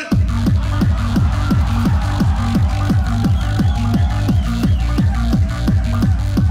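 Beatbox loopstation track playing: a fast, steady electronic beat built from looped mouth sounds, with a low kick that drops in pitch on each beat, about three and a half beats a second, under layered higher looped sounds.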